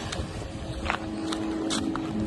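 Outdoor ambience: a low rumble of wind on the microphone with a steady motor hum coming in about half a second in, and a few light clicks.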